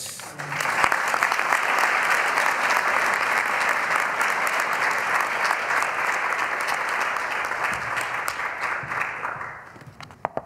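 Audience applauding: a dense, steady clapping that swells up within the first moment and dies away near the end.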